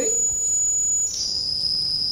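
Microphone feedback through a PA system from a handheld microphone: a steady high-pitched whistle that drops to a slightly lower pitch about halfway through.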